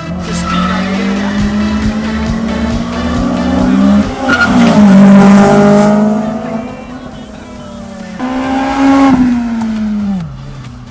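Car engine revving hard as the car is driven across the parking lot, with tyre squeal. It is loudest around the middle, eases off, comes back in suddenly, and the engine pitch falls near the end.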